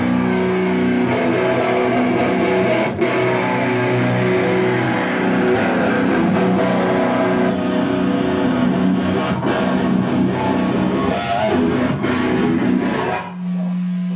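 Heavily distorted electric guitar played through an amp stack, holding long chords, stopping about a second before the end and leaving the amp's steady hum.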